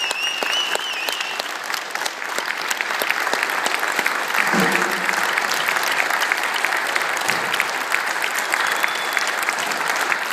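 Concert-hall audience applauding as the performers take their bow, the clapping swelling a little about halfway through. A short high held tone sounds over the applause in the first second or so.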